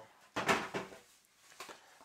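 A cardboard packet of paperwork rustling and scraping as it is lifted out of a graphics card box. The one loud rustle comes about half a second in, followed by a couple of faint ticks.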